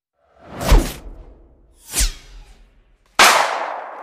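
Sound effects for an animated title card: two whooshes, each swelling to a sharp peak with a low thud, about a second in and at two seconds, then a sudden loud hit about three seconds in that slowly fades away.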